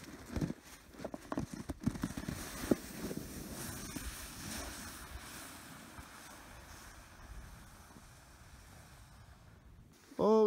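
Plastic sled with a rider sliding down a snowy slope: a few knocks and scrapes as it pushes off, then a hiss of the sled running over the snow that fades steadily as it moves away.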